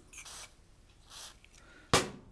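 Two short hisses from an aerosol can of WD-40-type penetrating lubricant sprayed onto a tight screw, then a sharp knock near the end as the can is set down on the enamel stovetop.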